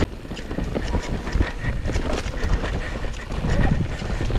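Mountain bike rolling fast down a dirt singletrack: a steady low rumble from the tyres and frame over rough ground, with many quick rattling clicks and knocks from the bike as it is shaken over roots and bumps.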